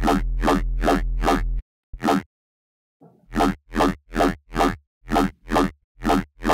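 Wonky dubstep bass patch in the Serum synthesizer playing, with a vowel-like, talking tone and a newly added sub oscillator underneath. It starts as a held note pulsing several times a second and stops after about a second and a half. After a pause comes a run of short stabs, about two a second.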